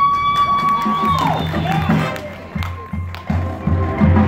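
High school marching band and front ensemble playing. A high sliding tone rises, holds for about a second and falls, with other sliding tones overlapping it. The music then thins to soft low drum hits before the full band comes back in near the end.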